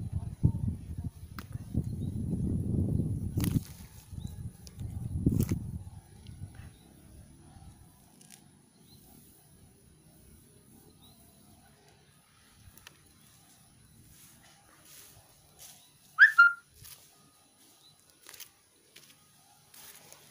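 Low rumbling noise on the microphone with two sharp clicks in the first six seconds, then quiet outdoor ambience with a faint steady high hiss, broken about sixteen seconds in by one short, loud, high chirp.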